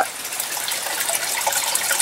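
Water running and splashing steadily in an aquaponic fish tank, an even rushing sound with no rhythm.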